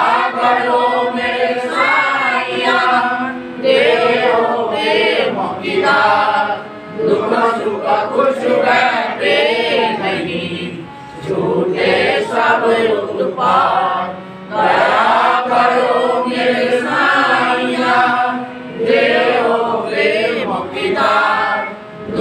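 A group of voices chanting a devotional prayer together in unison, in phrases of a few seconds with brief pauses between them.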